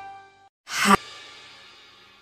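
A music track dies away, then a short rising whoosh swells and cuts off abruptly about a second in, leaving a faint fading tail. It is an edited-in transition between songs.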